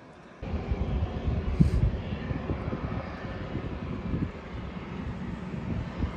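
Jet aircraft noise across an airfield: a steady rumble that comes in about half a second in.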